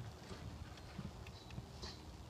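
Faint, scattered light taps and knocks from hand-tool work on a tiled roof, a few weak strikes spread across the moment.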